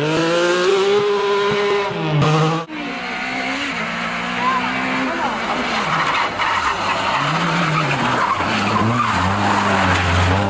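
Rally car engines revving hard. The first note rises and holds, then drops sharply about two seconds in. After a break, a second car's engine climbs and falls repeatedly through the revs.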